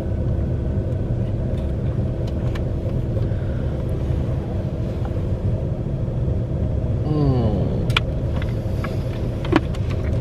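Steady low rumble and hum of a car running, heard inside the cabin. About seven seconds in, a short sound falls in pitch, and a few light clicks follow near the end.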